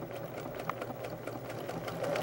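Electric sewing machine running steadily, its needle stitching a zigzag satin stitch around an appliqué corner, with one small click partway through.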